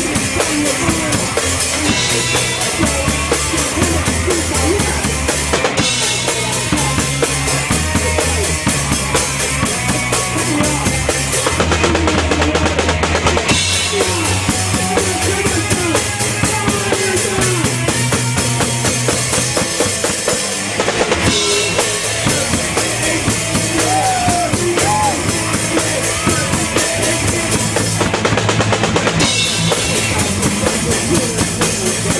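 Hardcore punk band playing live: drum kit and electric guitar, loud and continuous, with three brief breaks in the cymbals.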